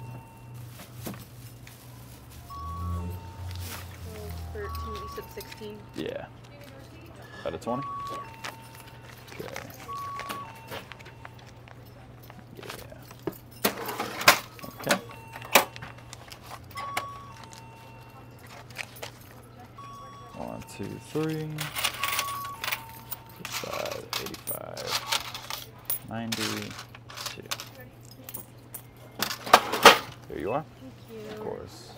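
Checkout-counter handling noise: a plastic carry bag rustling and small glass shooter bottles clinking as they are bagged, then clicks and clinks of cash and coins at the register, loudest about halfway through. Quiet background music with a repeating pair of short tones runs underneath.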